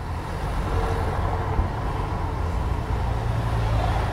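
Street traffic ambience: a steady low rumble of passing vehicles, used as a scene-setting sound effect.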